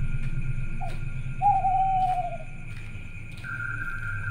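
A single drawn-out hooting call, falling slightly in pitch, with a short rising chirp just before it, over a low steady drone.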